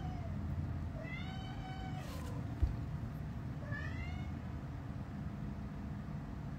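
A domestic cat meowing three times: a short call at the start, a longer meow about a second in, and a shorter one around four seconds in. A single brief knock falls between the second and third meows, over a steady low hum.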